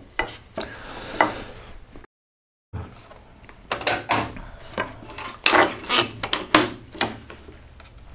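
Knocks, clacks and short sliding rubs of wood and jig parts being handled and set down on a tablesaw table, with the saw not running. The sound drops out completely for about half a second about two seconds in.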